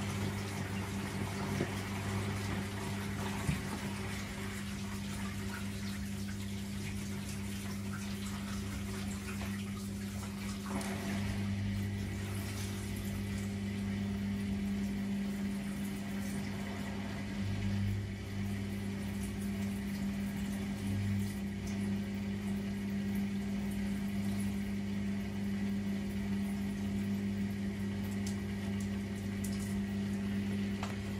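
Front-loading AEG Öko Lavamat washing machine in its second rinse: water running and sloshing in the drum over a steady low hum from the machine.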